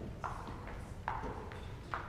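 Footsteps of hard-soled shoes on a wooden stage floor: three sharp, clear steps roughly a second apart among fainter ones.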